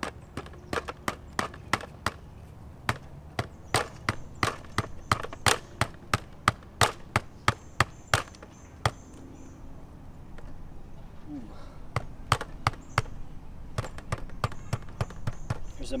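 A mallet striking the top of a garden stake to drive it into wet ground, about two sharp blows a second, with a pause of a few seconds past the middle before a second run of blows.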